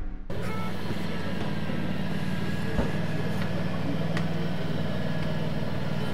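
The tail of the intro music cuts off at the start, followed by a steady low motor hum, like an engine running at a constant speed, with a few faint clicks.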